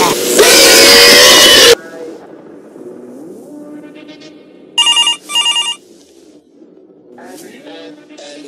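A loud scream over music for the first couple of seconds, cut off abruptly. Quieter music follows, with a telephone ringing twice in two short bursts about five seconds in.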